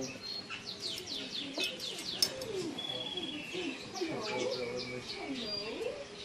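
Small birds chirping and tweeting, a busy run of quick, high, falling chirps, with faint voices underneath.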